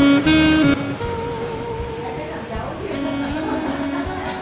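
A group singing a song with instrumental accompaniment. The held notes are loudest in the first second, then the singing goes on more softly.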